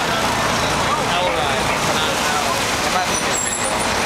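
Busy city street ambience: steady traffic noise from passing cars and taxis mixed with the overlapping chatter of a crowd, with a few brief high squeaks about three seconds in.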